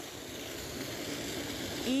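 Steady hiss of running water, even and unbroken.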